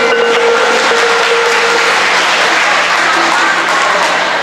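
Audience applause. It rises as tuned mallet-percussion music fades out in the first second or two, then carries on steadily.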